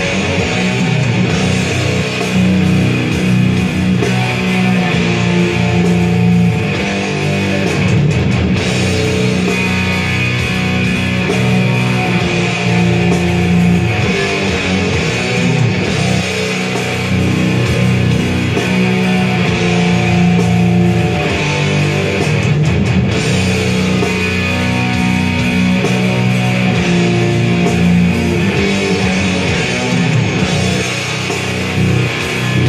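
Electric guitar in B standard tuning playing death-metal riffs without a break.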